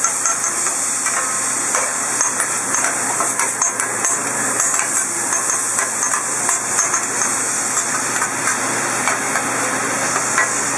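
Steel spatulas chopping and scraping cheesesteak meat, onions and peppers on a hot flat-top griddle: rapid, irregular metal clacks and scrapes over a steady sizzling hiss.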